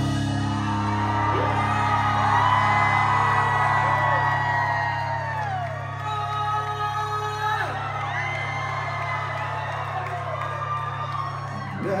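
A live rock band's electric guitars and bass holding a long sustained chord while the audience cheers and whoops.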